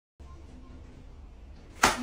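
Faint steady room hum, then near the end a single sudden, loud sharp hit that dies away quickly.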